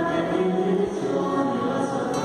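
Many voices singing a hymn together, in slow held notes.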